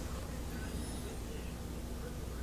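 Faint, steady low hum of a propane-fired heating boiler running, just kicked on by the thermostat's heat call during a system test.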